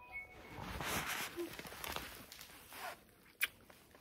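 Uneven rustling and handling noises with small clicks, then one sharp click about three and a half seconds in.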